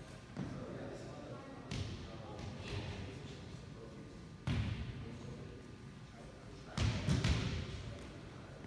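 Volleyballs thudding in a gym with a hollow echo: a handful of single hits spread through the first half, a louder one about halfway, and a quick cluster of three near the end, over faint voices.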